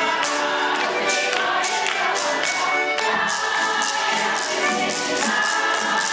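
A children's Russian folk choir singing in chorus, with a steady beat of sharp strikes about twice a second.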